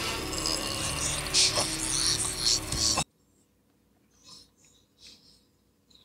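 Audio from a low-budget horror film's soundtrack: a loud, dense, noisy mix that cuts off suddenly about three seconds in, leaving near silence with a couple of faint short sounds.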